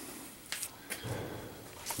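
A quiet pause in room noise, broken by a few faint short clicks.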